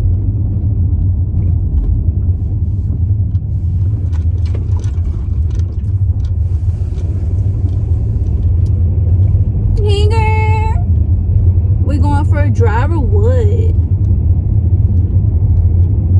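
Steady low rumble of a car's engine and road noise heard inside the cabin while it is being driven. A short voice-like sound comes in about ten seconds in and again a couple of seconds later.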